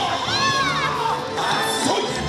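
Yosakoi dancers shouting a drawn-out call together over loud dance music, the shout rising and falling about half a second in.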